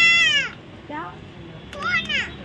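A high-pitched, meow-like call that rises and falls, followed by a shorter one about a second in and another starting near the end.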